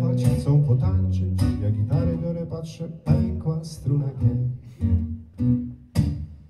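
Acoustic guitar strummed in a folk song, with a man singing over it at first. In the second half the guitar plays alone, its chords struck and left to ring about twice a second.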